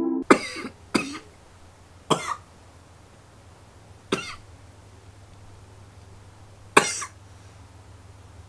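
A person coughing: about five short, separate coughs, coming further apart as they go, over a faint steady low hum.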